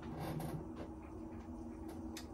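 Soft rubbing handling sounds from a glass beer bottle turned in the hand, a few faint scratches over a low steady hum in a quiet small room.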